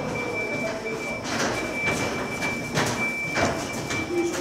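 A heavy plastic-wrapped platform-door unit is wheeled over a temporary scaffold-and-plank ramp beside the train, with rolling noise and four knocks and rattles about half a second to a second apart. A steady high-pitched whine runs underneath.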